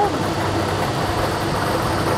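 Lottery ball-draw machine running between draws, a steady mechanical noise as it mixes the numbered balls.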